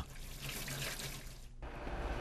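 Kitchen tap running into a stainless-steel sink while a dish is rinsed under the stream by hand. The rushing sound thins out abruptly about one and a half seconds in.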